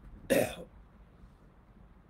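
A man clearing his throat once, a short burst about a quarter second in.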